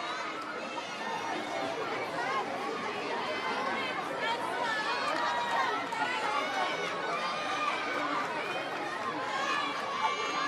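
Steady chatter of a ballpark crowd, many voices talking at once with no single voice standing out.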